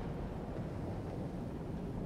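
A steady low rumble with a faint hiss underneath, even throughout, with no distinct events.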